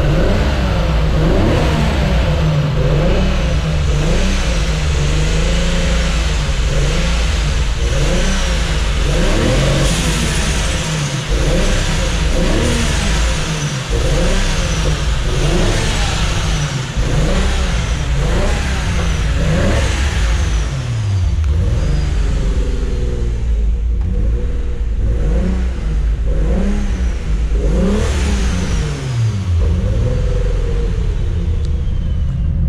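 Turbocharged RB26 straight-six of a Nissan Skyline GT-R R32 running and revved in repeated throttle blips, the revs rising and falling every second or two. It is firing on all six newly fitted aftermarket ignition coil packs and running well.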